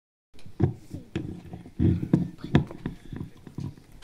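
Irregular knocks and bumps of handling noise from a handheld microphone, about a dozen uneven thuds over a few seconds.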